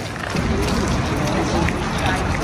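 Voices of people talking close by, over a low rumble of wind on the microphone.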